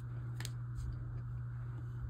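Printed paper cards being handled: one light click about half a second in and a few faint ticks, over a steady low hum.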